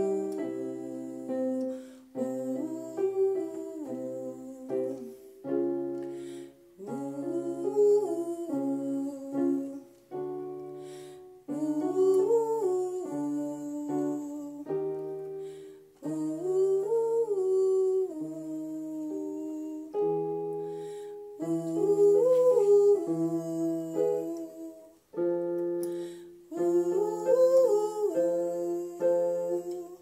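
A woman singing a vocal warm-up on "ooh" over piano chords on an electronic keyboard: a short melody that climbs and falls back, repeated about every five seconds, each time a step higher.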